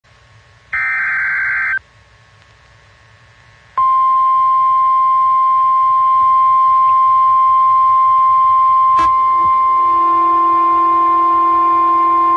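NOAA Weather Radio alert signal. A one-second burst of digital SAME header data comes first, then a couple of seconds of faint hiss. About four seconds in, the steady 1050 Hz warning alarm tone starts, signalling that a warning (here a severe thunderstorm warning) is about to be read.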